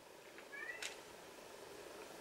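A domestic cat meowing faintly off-camera: one short, high call about half a second in, followed by a small click.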